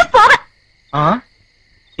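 Two short fragments of a person's voice over a steady, high-pitched cricket trill that runs on unbroken and stops just before the end.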